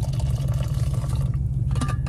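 Steady low rumble of an idling pickup truck heard inside the cab, with a few small clicks near the end as a vacuum flask is handled.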